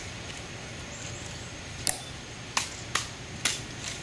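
Rifle inspection: white-gloved hands slapping an M14 rifle as it is snapped from the sentinel's hands and handled, giving about five sharp clacks in the last two seconds.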